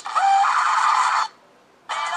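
A loud, harsh scream lasting just over a second, rising in pitch at the start and cutting off abruptly.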